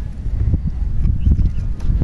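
Wind buffeting the microphone in a low irregular rumble, with a few light clicks and knocks from hands working on the backpack sprayer's engine fittings. The sprayer's engine is not running.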